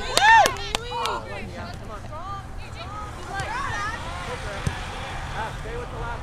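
Voices calling out on and around a soccer field: a loud shout at the start, then fainter calls and chatter over outdoor background noise. A single dull thud about two-thirds of the way through.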